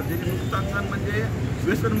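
Men's voices talking over a steady low rumble of outdoor background noise in on-location field audio.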